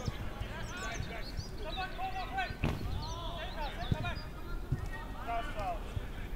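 Footballers calling and shouting to each other across an outdoor pitch, with a few sharp thuds of the ball being kicked, one about two and a half seconds in and others later.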